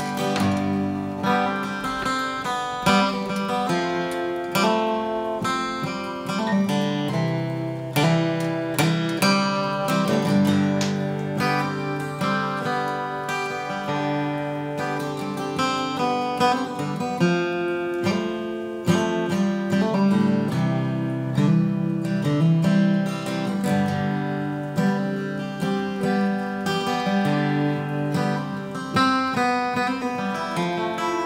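Steel-string acoustic guitar strummed in a steady rhythm, an instrumental passage of chords without singing.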